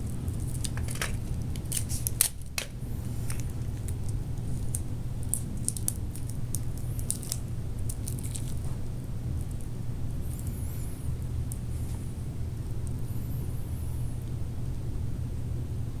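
Adhesive tape being handled and wrapped to fix a cardboard sun onto a wooden dowel: scattered small clicks and crinkles, most in the first half, with a couple of faint high squeaks later, over a steady low hum.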